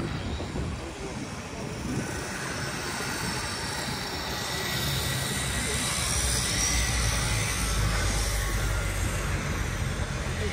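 Pontoon boat's outboard motor running steadily under way, with water and wind rushing past; the low engine rumble grows louder from about halfway through.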